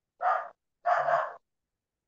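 Two short bursts of breathy noise, like breaths or sighs into a microphone, the second one longer.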